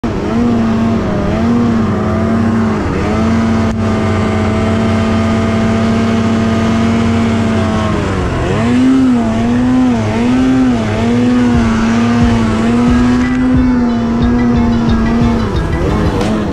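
Arctic Cat snowmobile's two-stroke engine revving up and down under throttle while pushing through deep powder; about halfway through the revs drop sharply and climb back.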